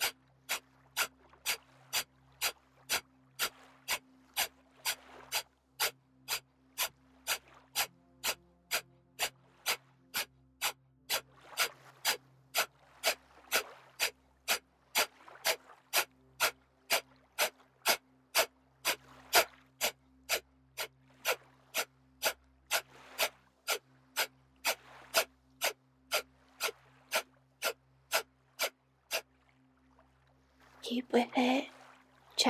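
Breath of fire: quick, forceful exhalations pumped out through the nose in a steady rhythm of about two a second, each one driven by the belly pulling in, with the inhale left passive. The breathing stops about a second before the end.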